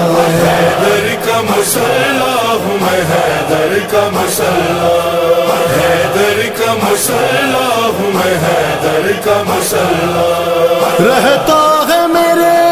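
Urdu devotional manqabat: voices chanting in a steady vocal backing with no instruments carrying a tune. Four sharp percussive hits fall evenly, about two and a half seconds apart.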